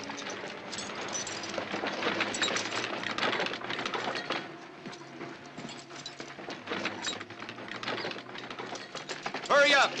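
Irregular clattering and rattling of a party of men moving on foot with muskets and gear, with scattered men's voices. A loud shout comes near the end.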